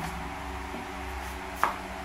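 A steady low hum with a single sharp click about one and a half seconds in.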